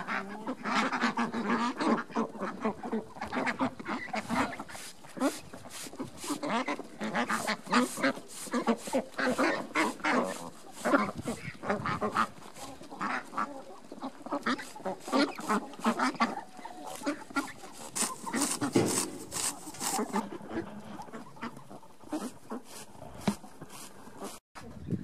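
A flock of domestic ducks quacking continuously in many short, overlapping calls as they crowd round to be fed.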